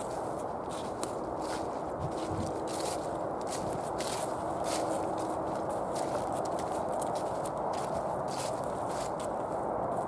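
Footsteps through dry fallen leaves on a woodland path, about two steps a second, over a steady background rush.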